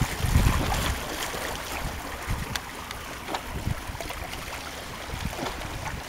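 Small waves lapping at the shoreline with a steady wash of water and a few light splashes, over a low rumble in the first second.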